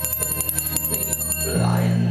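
Live band music: a rapidly repeating bell-like chiming over a held low note. About a second and a half in the chiming stops and a new low note sounds, with crowd noise starting up.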